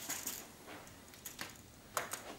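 Faint metallic clicks and light rattling from a steel tape measure blade being handled against a wall, with a sharper click near the end.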